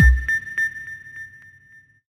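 The closing hit of an intro logo sting: a short deep boom with a high, sonar-like ping that repeats as an echo about three times a second and fades out.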